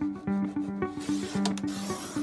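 Guitar music, and from about a second in a scraping rub of a paper trimmer's blade sliding along a flattened cardboard cereal box as it cuts.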